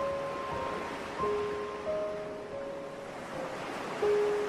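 Ocean waves washing on a beach, a steady noisy surf, with a slow, soft melody of single sustained notes laid over it, a new note sounding roughly every half second to second.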